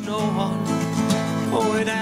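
A man singing a slow folk song over his own acoustic guitar.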